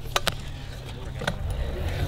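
Kick scooter landing a jump on concrete: two sharp clacks in quick succession as its wheels touch down, then the wheels rolling over the concrete with a low rumble and another click about a second later.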